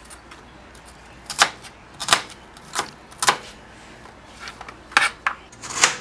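Kitchen knife cutting shallot and ginger on a plastic cutting board: about six separate knocks of the blade on the board, unevenly spaced.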